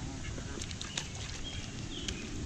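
Ducks quacking a few short times among Canada geese, over a steady low rumble.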